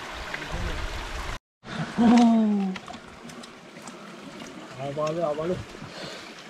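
Creek water running steadily under a person's wordless voice: one long falling vocal sound about two seconds in, which is the loudest thing, and a shorter wavering one near the end. The audio drops out completely for a moment about a second and a half in.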